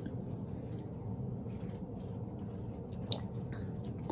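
Quiet mouth sounds of people sipping and tasting red wine, over a low steady room hum, with one sharp click about three seconds in.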